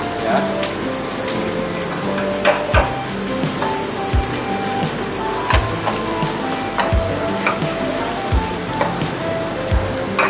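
Pesto sauce of olive oil, basil and garlic sizzling as it heats in a stone-coated wok over a gas burner, stirred with a wooden spatula, with a few sharp taps of the spatula against the pan.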